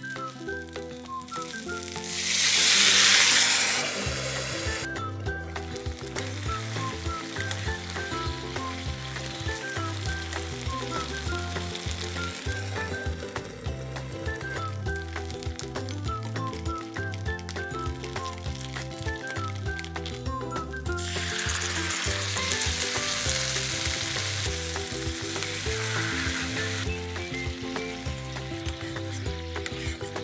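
Pork-wrapped rice balls sizzling as they fry in oil in a frying pan, under background music with a steady beat. A loud burst of sizzling comes about two seconds in, and the sizzle swells again in the second half.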